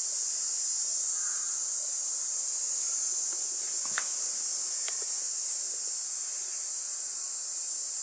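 Steady, even high-pitched hiss, with two faint brief clicks about four and five seconds in.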